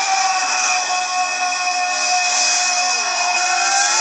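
Film soundtrack music from a television: sustained, steady notes with a few slowly sliding tones near the end, over a high hiss.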